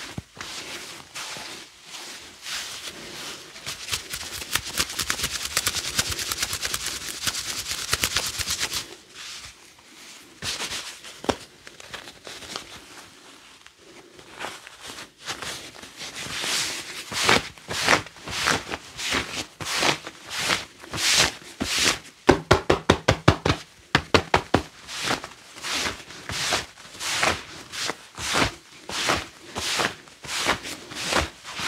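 Gloved hands rubbing and scratching over a knit top and hair, then patting and stroking down the back about once a second, with a quick run of sharp taps a little past the middle.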